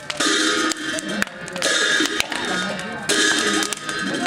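Cymbals and drum accompanying a Bhutanese masked dance: ringing cymbal clashes swell in strokes about every second and a half over steady drumming.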